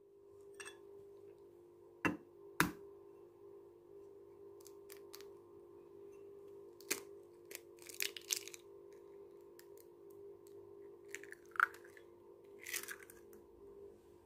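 A hen's egg cracked against the rim of a ceramic bowl: two sharp taps a little after two seconds in, then soft crackles and clicks of the shell being pulled apart by hand as the yolk is separated into the bowl. A steady faint hum runs underneath.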